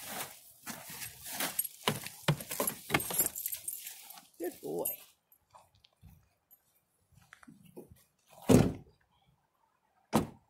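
A harnessed pack goat moving over hay and a tarp in the back of an SUV and getting out: a few seconds of rustling and sharp clicking and jangling, then a single loud thump near the end.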